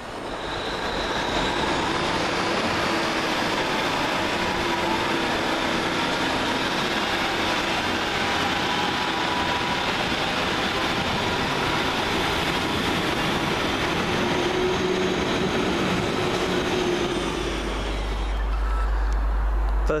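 Northern Rail multiple-unit train running past along the platform close by: a loud, steady rumble of wheels on rail with a faint whine above it.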